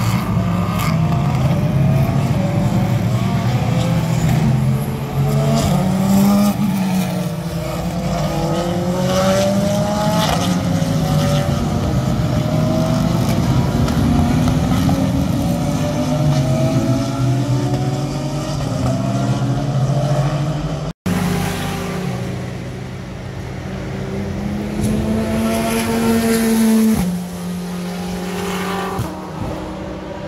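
A pack of race cars going by on a road course, many engines at high revs, their pitch rising and falling as the cars pass, brake and accelerate. The sound drops out for an instant about two-thirds of the way through, then carries on with engines holding a high pitch before one falls away sharply near the end.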